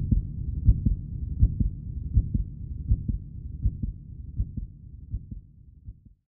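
Heartbeat sound effect: low double thumps repeating about every three-quarters of a second over a low drone, fading out toward the end.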